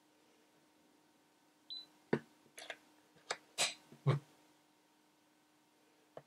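A clamp meter gives a short high beep about one and a half seconds in, followed by five or six clicks and taps as its buttons are pressed to zero the DC current reading.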